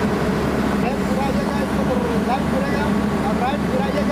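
Diesel engine of a Hyundai 210 crawler excavator running steadily with a low, even drone.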